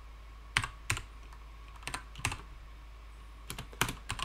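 A few computer keyboard keystrokes, typed in pairs with pauses of about a second between them, and a quicker run of keys near the end.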